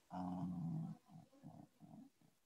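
A voice holding one steady-pitched vocal sound for about a second, followed by a few short murmured sounds.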